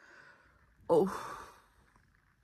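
A woman's long, weary sigh, voiced as "oh", starting about a second in, falling in pitch and trailing off into breath: a sound of tiredness on just waking.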